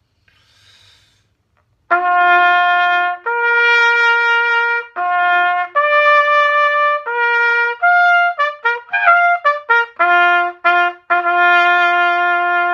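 A valveless B-flat double-twist bugle with a large conical bell, a B.A.C. Instruments prototype, playing a bugle call. Held notes start about two seconds in, a run of quick short notes comes in the middle, and the call settles on low held notes near the end.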